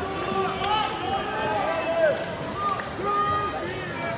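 Many overlapping voices of spectators chattering at once in a large sports hall, with no single speaker standing out.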